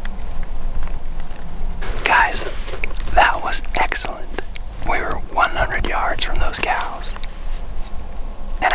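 A man whispering close to the microphone, starting about two seconds in and stopping shortly before the end.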